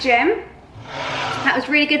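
A woman talking, with a short break in her speech a little after the start before she goes on.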